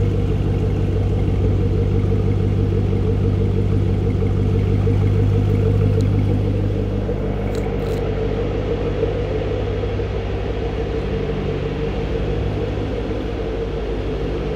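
2014 Chevrolet Camaro ZL1's supercharged 6.2-litre V8 idling steadily, heard at its dual exhaust tips: a low, even rumble that gets a little quieter from about halfway on.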